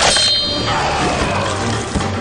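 A sharp metallic clang right at the start that rings on briefly in high tones, over a steady low background of soundtrack effects.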